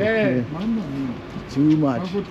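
Men's voices talking, with no clear words caught; only speech.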